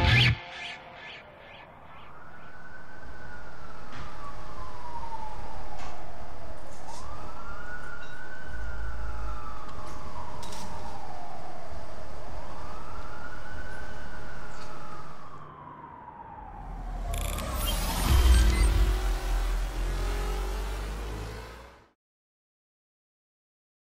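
A siren wailing in three slow rises and falls of pitch, each about four and a half seconds long, over a low hum. Near the end a louder rush of noise with a low rumble comes in, then the sound cuts off suddenly.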